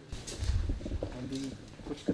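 Low, indistinct men's voices murmuring in a small room, with a low rumble about half a second in.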